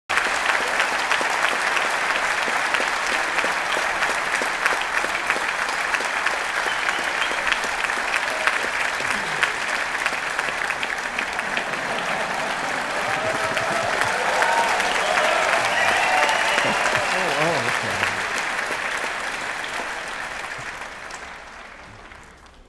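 Audience applauding steadily with dense clapping, which dies away over the last couple of seconds. Voices rise over the clapping in the middle.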